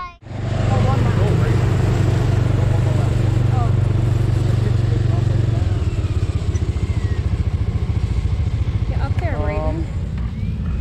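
Dirt-track race car engines running at low speed across the track, a steady low rumble that turns more uneven about halfway through. A voice speaks briefly near the end.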